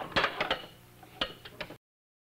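Ball bearings rolling and clicking through a mechanical binary adder board as two balls, one and one, arrive at a rocker arm at once. The arm balances and passes a single ball on to the 'two' position. There is a quick cluster of clicks at the start, another click about a second later, and then the sound drops out completely near the end.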